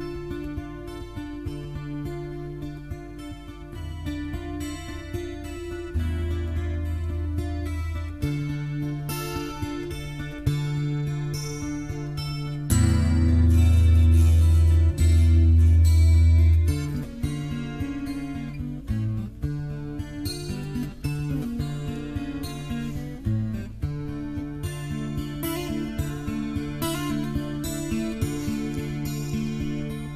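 Solo steel-string acoustic guitar playing a picked instrumental introduction to a song, with a louder stretch of deep bass notes about halfway through.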